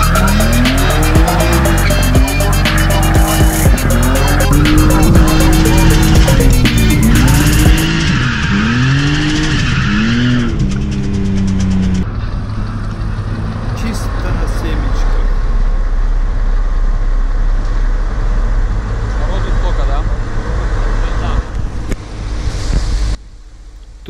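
BMW E30 drift car with its engine revving up and down over and over and its tyres squealing, under background music with a fast beat. About halfway through it cuts to quieter outdoor sound with people talking.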